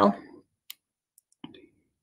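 A woman's voice trailing off, then near silence broken by one faint click about two-thirds of a second in and a short soft sound about halfway through.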